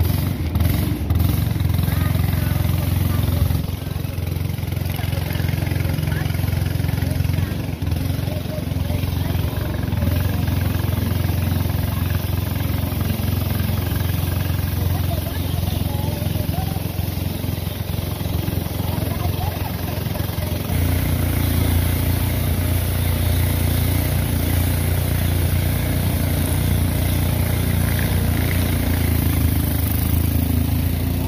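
A small boat's motor running steadily under way, with water rushing past the hull. About two-thirds of the way in its note shifts and it gets a little louder.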